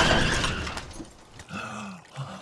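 A man's body crashing onto a car windshield with a glass-shattering impact, the crash dying away over about a second.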